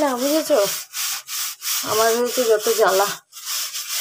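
Back-and-forth scrubbing of a hard surface with a brush or scouring pad, a steady rasping scrape broken by short pauses, with a woman talking over parts of it.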